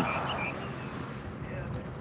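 Outdoor background noise, a steady low hum of the surroundings, with a few faint bird chirps in the first half second.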